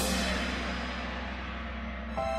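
Orchestral music: a crash of metal percussion rings and slowly dies away over a low held bass note.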